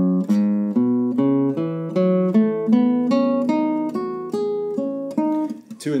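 Classical nylon-string guitar played one note at a time, in a steady run of about three notes a second. It is a left-hand finger-pair exercise, first and third fingers, alternating two fretted notes on each string and moving across the strings.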